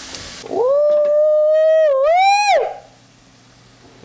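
A long, high held howl-like vocal note lasting about two seconds. It dips briefly, then rises in pitch before it breaks off.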